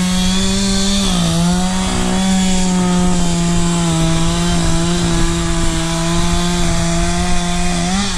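Two-stroke chainsaw held at high revs, its pitch dipping slightly about a second in and then staying steady, as it cuts through a felled limb. It stops near the end.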